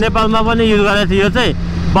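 A man talking over a BMW S1000RR's inline-four engine running steadily under way, with a low rumble of wind and road noise beneath. His voice drops out briefly about one and a half seconds in, leaving the engine hum.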